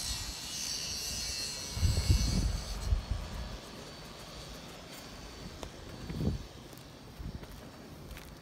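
A few low thumps and rumbles from steps and handling on an asphalt-shingle roof, the strongest about two seconds in. A high, thin insect-like buzz fades out after the first few seconds.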